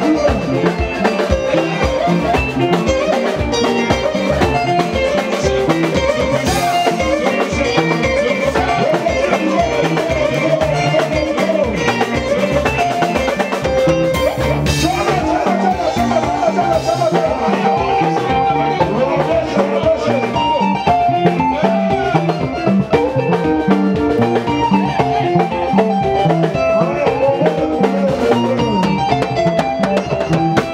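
Live band playing dance music: a drum kit keeps a steady beat under a Yamaha MOXF keyboard, with singers on microphones.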